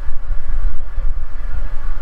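A loud, low, uneven rumble with no voice over it.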